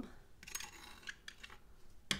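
Metal palette knife scraping along the edge of a canvas to clear off wet acrylic paint drips: a few faint scrapes and light clicks.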